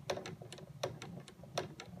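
Light, irregular clicks and taps, three or four a second, as the model helicopter's metal tail drive shaft is handled on the workbench.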